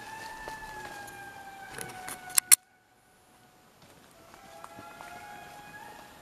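Indri lemurs singing: a long wailing note held for more than two seconds, sliding slowly down in pitch. Two sharp clicks and a brief drop-out follow, then several wails overlap at different pitches.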